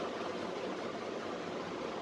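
Steady, even hiss of background room noise with no distinct event in it.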